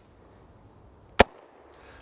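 A single sharp shot from an AR-15 rifle fired without a suppressor, about a second in.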